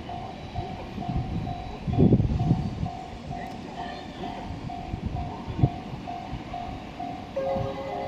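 Electronic level-crossing warning bell ringing at a steady pace of about two strikes a second, signalling an approaching train, over low rumbling noise that is loudest about two seconds in. Near the end a second set of higher and lower tones joins in.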